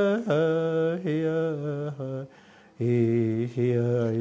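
A man singing a song in vocables, unaccompanied, with no drum. He holds long notes that step down in pitch, pauses briefly about two seconds in, then sings lower notes near the end.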